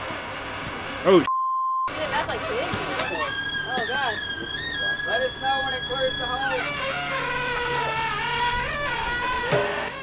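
People's voices, with a long drawn-out held call or sung note in the middle. A short censor bleep replaces the sound briefly, a little over a second in.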